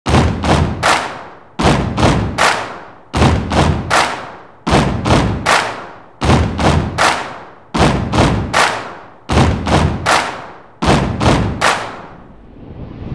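Heavy drum hits in a repeating rhythm: a short cluster of strikes comes round about every one and a half seconds, eight times over, each hit ringing and fading out.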